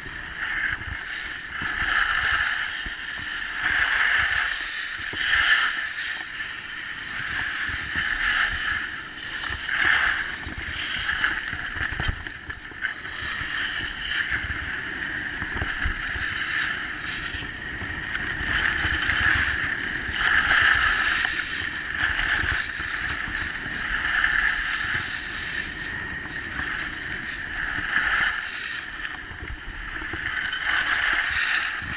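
Skis hissing and scraping over groomed snow, swelling and fading about every two seconds with each turn, with wind rumbling on the microphone.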